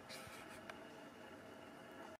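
Near silence: faint room tone, a steady hiss with a low hum, and two soft clicks in the first second.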